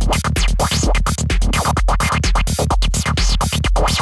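Dark prog psytrance loop playing back: a steady kick a little more than twice a second under a noise lead chopped into rapid pulses, with filter sweeps rising and falling.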